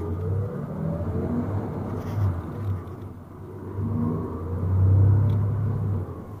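Shuttle coach's engine heard from inside the passenger cabin as the bus accelerates. Its low rumble climbs in pitch, eases off about halfway, then climbs again and is loudest about five seconds in.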